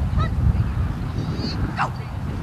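A few short animal calls, each rising in pitch, one about a quarter second in and a longer one near the end, over a steady low rumble.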